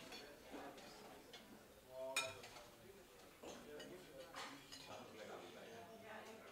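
Clinking of metal serving tongs, chafing dishes and china plates at a buffet, with one sharp ringing clink about two seconds in, over a faint murmur of diners' chatter.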